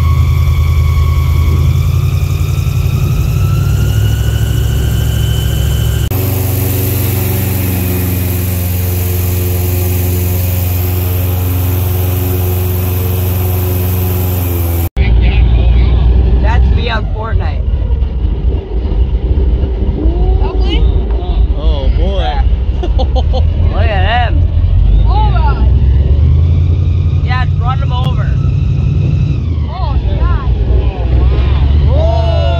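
Airboat engine and propeller running loud and steady, rising in pitch over the first few seconds. The drone changes abruptly twice.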